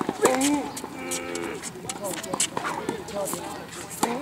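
Tennis balls struck by racket strings in a baseline rally, heard as repeated sharp pops, with several short squeaks of tennis shoes on the hard court, the longest about a second in.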